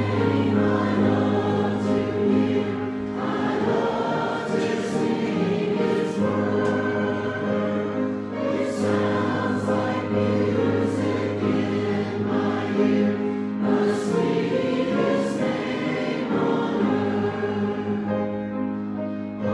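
A mixed choir of men's and women's voices singing in sustained chords over a held low bass note, the words' "s" sounds carrying clearly.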